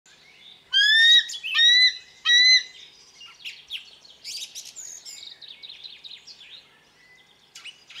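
Bird calls: three loud, clear whistled calls in quick succession, each rising and then levelling off, followed by a quieter, rapid run of chirps and twitters that fades out near the end.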